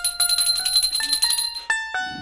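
Small hand bell rung rapidly at a household shrine, about a dozen strokes a second, stopping about a second and a half in, over background music with a melody.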